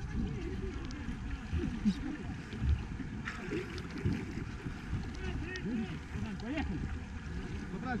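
Water sloshing close to a microphone held at the waterline, with several men's voices calling faintly in the background, no words clear.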